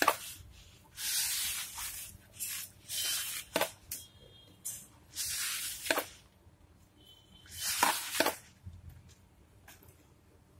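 Hand squeezing and rubbing crumbly flour, gram-flour and semolina dough against the bowl while kneading it, in rasping strokes about a second long, with a few sharp clicks in between. The dough is still dry and crumbly, with water being worked in a little at a time.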